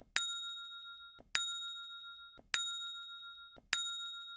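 Bell-chime sound effect for a notification-bell icon, struck four times about a second and a quarter apart, each ding ringing on and fading before the next.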